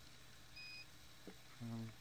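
A short electronic beep, one steady high tone lasting about a third of a second, about half a second in. Near the end a man gives a brief hummed "mm".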